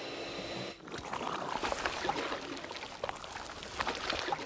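Cartoon sound effect of thick cooking grease gurgling and sloshing as it is drawn through a hose, an uneven liquid noise full of small pops and clicks. Before it there is a brief steady hum that stops under a second in.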